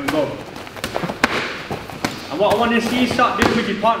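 Scattered thuds and slaps of boxing gloves and shin guards striking gloves and arms in light partner drilling, with people talking over them.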